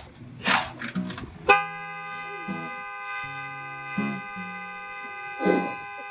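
A car horn held in one long steady blast of about five seconds, starting suddenly about a second and a half in, over soft background guitar music.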